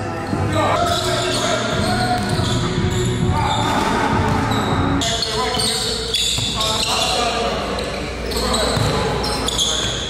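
A basketball dribbled on a hardwood gym floor during a pickup game, with players' voices in a large gym hall.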